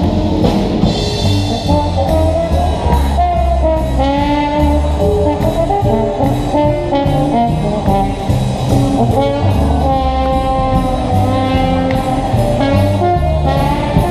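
A live swing big band playing an instrumental passage: saxophones and brass carry held and moving lines over a bass line and a steady cymbal beat.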